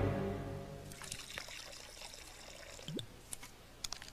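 A short music cue fades out over the first second. Then, in the quiet, there are faint liquid sounds of someone drinking from a soda can, with a few small clicks and a brief rising squeak about three seconds in.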